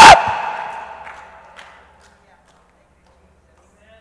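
The end of a man's loud shout through a microphone just at the start, ringing on in the hall and dying away over about two seconds, then near silence.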